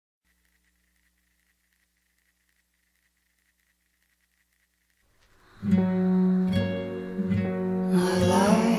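Near silence for about five seconds, then a song begins: plucked guitar chords and a woman's soft singing voice come in together, the voice singing "I like".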